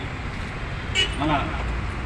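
Steady low rumble of road traffic, with a sharp click about a second in and a short spoken word just after it.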